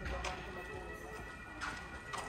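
Street ambience: two sharp clacks on hard paving, a quarter second and about a second and a half in, over a steady background of distant voices.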